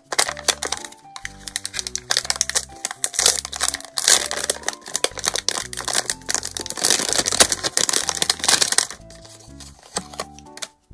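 Clear plastic packaging crinkling and crackling as hands unwrap a small bagged item. The crinkling starts just after the beginning and stops about nine seconds in. Background music with a simple melody plays underneath.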